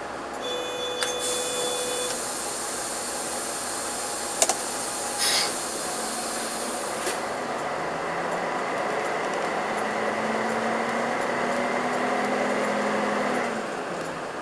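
Inside a Karosa B731 city bus: a short steady beep and a long hiss of compressed air, broken by a click and a brief louder burst, then the diesel engine rising in pitch as the bus pulls away, dropping back near the end as it changes gear.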